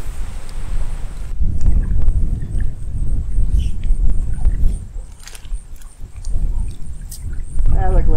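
Water sloshing and splashing around legs wading a shallow stream, over a low, gusting rumble of wind on the microphone, with a few short splashes or knocks.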